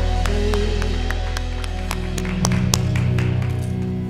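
Worship band music held on sustained keyboard and bass chords, with a few scattered hand claps over it.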